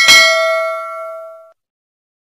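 Notification bell sound effect: a single bright ding that rings for about a second and a half, then cuts off.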